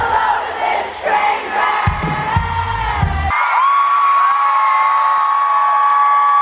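A concert crowd cheers and sings over a live band. About halfway through, the band's low end drops out and a single long high note is held steadily to the end.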